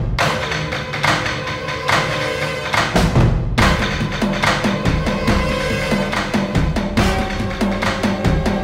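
Dramatic background music score: held tones over a steady percussion beat, with the beat quickening about halfway through.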